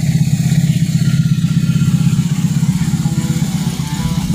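BMW R18 First Edition's 1.8-litre boxer twin idling steadily through handmade aftermarket slip-on mufflers, a low, even pulsing exhaust note.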